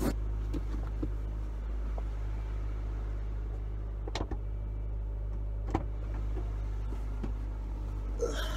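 Steady low hum inside a parked car, with a few sharp knocks and clicks from the driver's door and seat as a person gets out and climbs back in: one near the start and two more about four and six seconds in.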